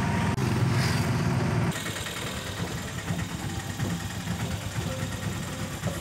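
Vehicle engine running steadily, heard from inside the cab, its sound dropping noticeably quieter about two seconds in.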